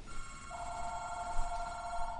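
Telephone ringing: a steady electronic ringtone of held tones, a louder, lower pair of tones joining about half a second in.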